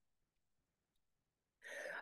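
Near silence, then a short in-breath near the end.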